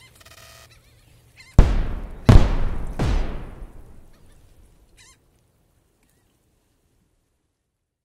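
Logo sting sound effect: a short pitched tone, then three deep, heavy booming hits about 0.7 s apart, each ringing out as it fades. A brief faint warble follows about five seconds in.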